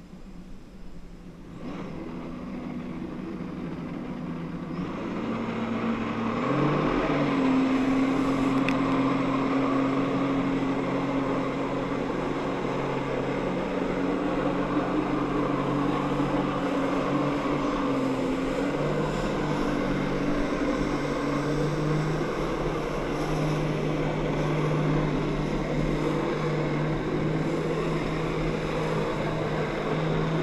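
Jet ski engine powering a flyboard: it rises in pitch and loudness over the first several seconds, then holds at high, steady revs with small throttle changes, over the rushing hiss of water spray.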